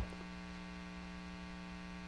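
Steady electrical mains hum: a low, even hum made of several fixed tones, with no change over the two seconds.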